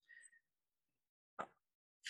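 Near silence between phrases of speech, with one brief faint sound about one and a half seconds in.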